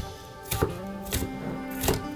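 Kitchen knife chopping onion on a wooden cutting board: three sharp knocks of the blade on the board, spaced over about two seconds, with soft background music underneath.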